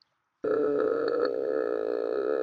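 A person's voice: one long, steady, buzzy drone held for about two seconds, starting abruptly about half a second in.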